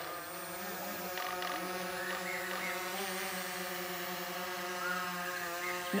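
A camera drone's motors and propellers buzzing at a steady pitch as it flies.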